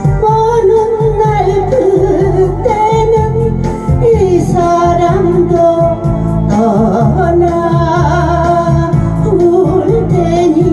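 A woman singing a Korean song into a microphone over amplified backing music with a steady low beat. Her voice comes in right at the start, after an instrumental passage.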